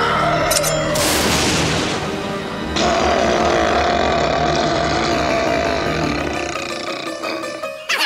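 Cartoon background music with monster roar sound effects: a first roar about a second in, then a louder, long wavering roar that starts suddenly near three seconds and fades out just before the end.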